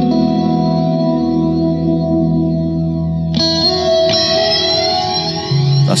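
Clean electric guitar through an Old Blood Noise Endeavors Procession reverb pedal on its flange tail setting. A chord rings out in a long reverb tail, and a new chord is struck about three and a half seconds in, its tail sweeping with the flange.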